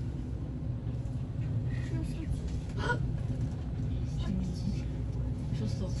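High-speed passenger elevator of the Ostankino TV tower on its ride: a steady low rumble and hum from the moving car.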